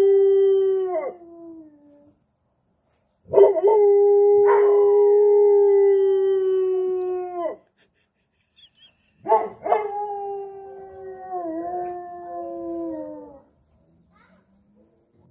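Dog howling: a howl that trails off about a second in, then a long steady howl of about four seconds, then a third, quieter howl whose pitch wavers and drops before it ends.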